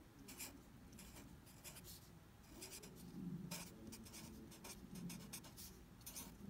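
Faint scratching of a pen or marker writing by hand: short irregular strokes with brief pauses between them.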